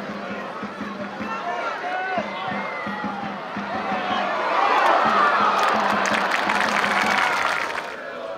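Football stadium crowd shouting and chanting, swelling about four seconds in to loud cheering with clapping that lasts several seconds before dropping away; with the teams back at the centre circle for a kickoff straight after, the cheer marks a goal.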